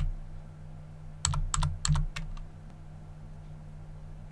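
Computer keyboard keys being pressed to type a number on the numeric keypad: a quick run of about half a dozen key clicks between one and two and a half seconds in. A steady low hum runs underneath.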